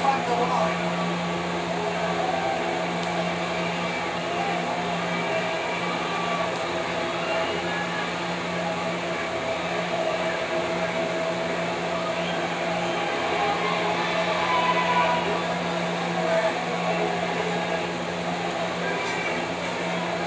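A steady low hum throughout, with faint, muffled voices beneath it.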